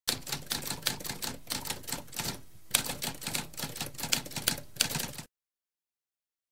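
Typewriter keys typing in a rapid run of sharp clicks, with a brief pause about halfway through and a sharper strike as typing resumes; the typing stops about a second before the end.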